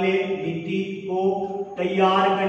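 A man's voice drawing out long, steady held syllables in a chant-like tone, with short breaks about a second in and near the end.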